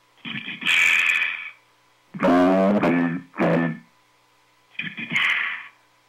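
Effects-processed sounds coming in over a CB radio and heard through the set's speaker, in three bursts about a second long with near silence between them; the middle burst has a wavering pitch.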